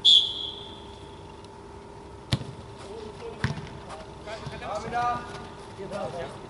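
Referee's whistle blown once for the corner, a loud shrill high note that fades away over about a second. A couple of seconds later comes a sharp thud of the football being kicked, then a duller knock and players shouting.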